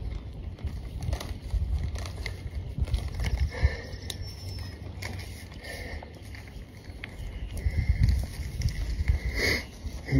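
Spring onions being pulled from a raised garden bed and handled: leaves rustling and soil crackling in short irregular bursts over a low rumble, with a louder short burst near the end.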